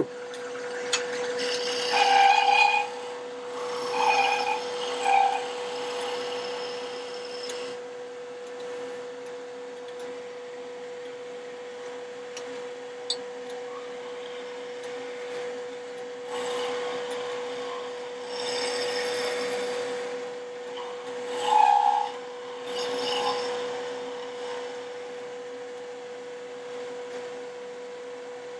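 Wood lathe running with a steady hum while a skew chisel takes light cuts on a thin spinning spindle. The cuts come as bursts of scraping noise, about two seconds in, around four to five seconds, and again through a stretch from about sixteen to twenty-four seconds.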